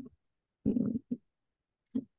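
Two short wordless vocal sounds from a woman: a longer one just over half a second in and a brief one about a second in.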